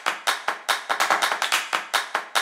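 Background electronic music starting with a fast, even run of clap-like percussion hits, about five a second, before any melody comes in.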